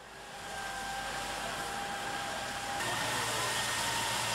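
Fire-truck pump and hose jet spraying water on a fire: a steady rushing noise with a faint steady whine over it. It swells in over the first second, and the whine shifts slightly higher near the end as a low hum joins.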